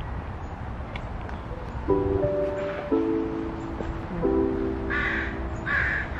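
Background music of held chords, each changing about once a second, comes in about two seconds in over a low outdoor rumble. Near the end come two short, harsh, caw-like calls.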